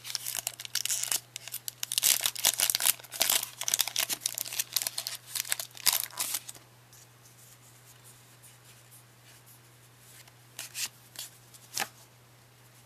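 Foil wrapper of a Pokémon Gym Challenge booster pack being torn open and crinkled by hand for about six and a half seconds, then mostly quiet with a few short crinkles near the end.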